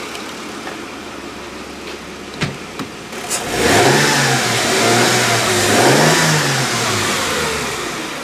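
Mercedes-Benz W210 E320's 3.2-litre V6 petrol engine idling, then revved twice in quick succession from a little before halfway, the pitch rising and falling back to idle each time.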